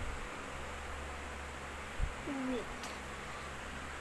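Steady room background noise with a low hum. A single soft knock comes about two seconds in, followed by a brief gliding tone that dips and rises.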